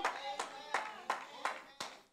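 A few faint hand claps, irregularly spaced, about five across two seconds.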